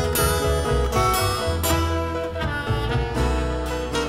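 Blues band recording in a short instrumental gap between sung lines: guitar over a steady bass line and drums.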